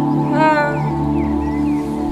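Live electronic dream-pop: sustained synth chords over a steady bass, with a short wordless sung note that slides up and holds about half a second in.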